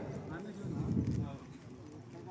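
Faint background voices of players and spectators at a kabaddi match, fading in the second half.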